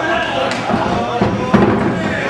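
Loud voices, with one heavy thud about one and a half seconds in as a wrestler is slammed down onto the wrestling ring mat.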